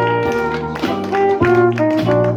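Live swing jazz band playing: saxophone and brass hold sustained melody notes over a steady beat from drums and strummed banjo.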